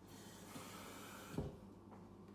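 Faint hiss for about the first second, then a single soft low thump about a second and a half in.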